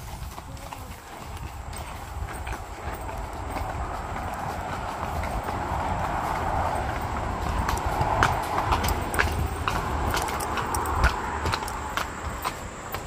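Hooves of several walking horses clip-clopping on a footbridge deck in scattered, uneven beats. Under them is a steady rush of highway traffic from below the bridge, which grows louder as the horses move out over the road.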